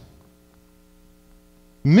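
A steady low electrical hum, heard in a pause between a man's sentences, with his speech resuming near the end.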